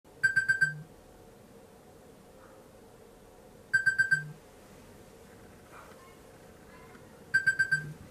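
Electronic wake-up alarm beeping in three bursts of about five quick, high beeps, the bursts roughly three and a half seconds apart.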